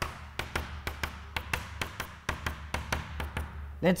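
Chalk tapping dots onto a blackboard: a quick, irregular run of about twenty sharp taps, roughly five a second, over a steady low hum.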